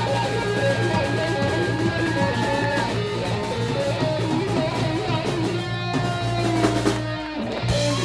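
Live rock band playing an instrumental section: an electric guitar lead with long held notes over bass guitar and drum kit. The band drops out for a moment near the end and then comes back in.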